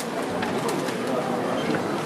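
Audience chatter, a steady murmur of many voices in a hall, with a few faint clicks.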